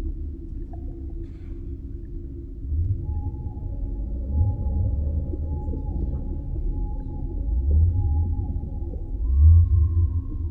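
Underwater soundscape from the stage production's sound score: a deep rumble swells and falls several times, loudest near the end, under steady low tones. From about three seconds in, a high held tone slides downward again and again, like distant whale calls.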